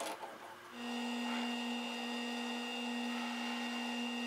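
Benchtop drill press motor switched on just under a second in, then running at steady speed with a level hum, after a few light clicks.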